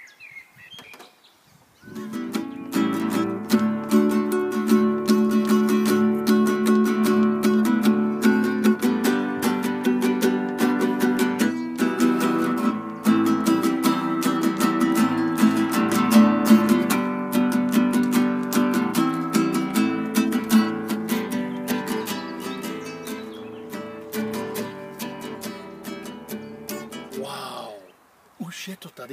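Acoustic guitar strumming chords in a steady rhythm, starting about two seconds in and fading away near the end.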